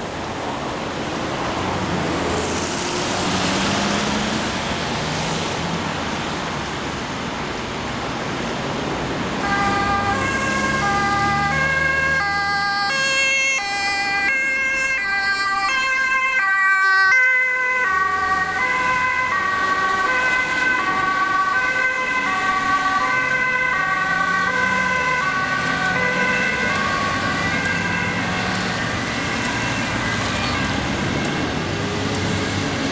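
Road traffic passing, then about nine seconds in the two-tone sirens of Dutch ambulances come in, alternating high and low. Two sirens sound at once and out of step with each other until the end.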